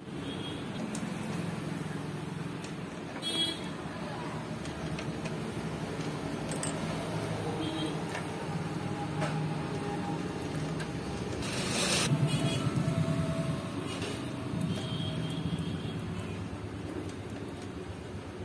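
Steady background traffic noise, rising to a louder surge about two-thirds of the way through, with a few small clicks and key jingles from handling a motorcycle ignition key switch.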